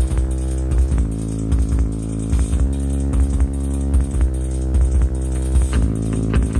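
Live band music taken from the soundboard: a sustained droning chord held over a regular drum-machine beat.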